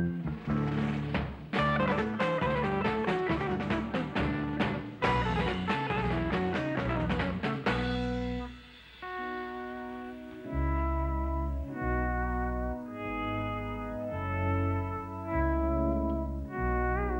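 Rock band playing an instrumental on electric guitar and organ with drums: a fast, busy passage, then from about eight seconds in slower long held notes with vibrato over a deep bass.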